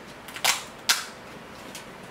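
Steamed blue crab's shell cracked apart by hand: two sharp cracks, about half a second in and again near one second, then a faint tick.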